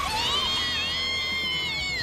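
A cartoon Pokémon's long, high-pitched voiced cry, dipping at first and then held for nearly two seconds, over background music.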